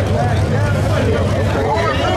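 A drag race car's engine idling steadily, a low even drone, under a crowd's overlapping voices and chatter.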